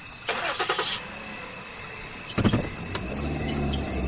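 Car engine sound effect: a short burst of noise less than a second in, then the engine starts about two and a half seconds in and settles into a steady idle that grows slightly louder.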